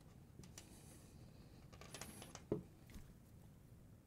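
Faint, scattered small clicks and rustles of linesman's pliers gripping and twisting stripped copper wires together, with gloved hands handling the bundle.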